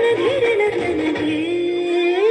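An Indian song with a high singing voice in ornamented, wavering runs that settle into a long held note about halfway through, over a steady accompaniment.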